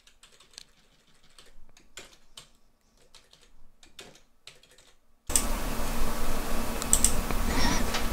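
Computer keyboard keystrokes: a few faint, scattered clicks while a line of code is edited. About five seconds in, a loud, steady rushing noise starts suddenly and covers the rest, with a few clicks within it.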